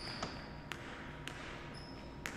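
A basketball dribbled on a hardwood gym floor, a few faint bounces about half a second apart, with a short high sneaker squeak near the end.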